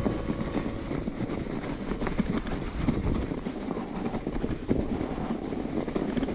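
Full-suspension mountain bike riding down a snowy forest trail: steady tyre rumble over the snow with small irregular rattles and knocks from the bike, and some wind on the microphone.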